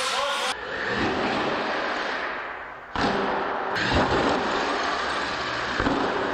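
Radio-controlled monster truck driving on a concrete floor, its motor and tyres making a steady, noisy run broken by thuds as it lands and tumbles. Voices can be heard briefly at the start.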